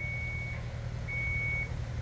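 A vehicle's reversing alarm beeping: one high steady tone, about half a second on and half a second off, sounding twice over a steady low rumble.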